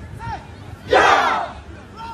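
A group of recruits shouting together once, a loud half-second battle cry about a second in, as part of a martial arts drill.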